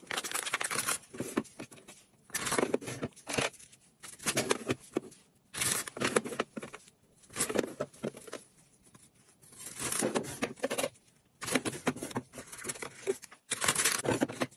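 Brown kraft paper bag rustling and crinkling in irregular bursts as gloved hands open and handle it.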